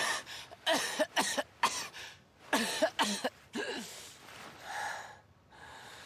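A young male character's voice coughing and gasping in pain: a quick run of short coughs and grunts over the first four seconds, then slower, softer breaths.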